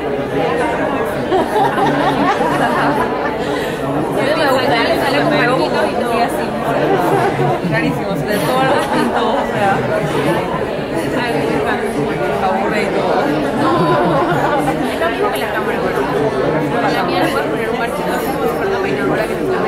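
Many people talking at once in a large room: overlapping conversation with no single voice standing out.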